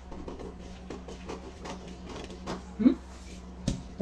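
Scissors cutting through paper pattern, a run of small irregular snips and paper crinkles, with one sharper click shortly before the end.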